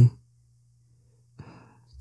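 A man's short audible breath, like a sigh, about a second and a half in, after the end of a spoken word; a faint steady hum lies underneath.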